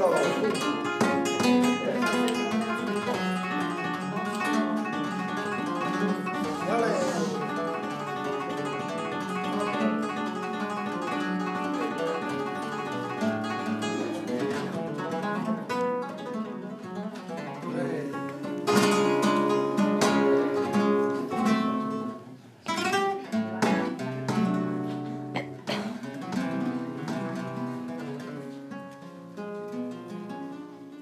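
Flamenco guitar playing fandangos: a solo acoustic guitar picking quick melodic runs, with a few sharper strummed chords in the second half.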